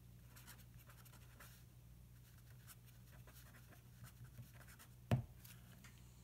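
Pen writing on paper: faint, irregular scratching strokes, with one sharper tap a little after five seconds in.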